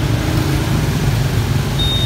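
Steady rain with a continuous low rumble of road traffic, and a short high electronic beep near the end.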